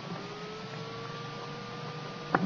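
Steady electrical hum and hiss of the recording's background, with a faint thin whine that rises slightly at the start and then holds steady.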